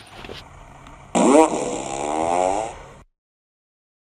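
A long, loud fart sound effect about a second in, its pitch wavering for about a second and a half before it fades out abruptly.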